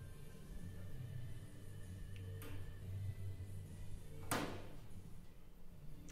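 Aluminium bonnet skin being worked through an English wheel: quiet rolling and handling sounds with one sharp knock from the sheet about four seconds in, and a fainter one a couple of seconds earlier.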